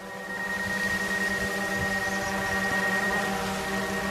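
DJI Mavic 2 Pro quadcopter's propellers humming steadily as it follows close by in Active Track mode, with a thin high whine over the hum.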